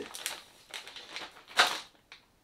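Clear plastic parts bag crinkling as it is handled and set down, in a few rustles, the loudest about one and a half seconds in.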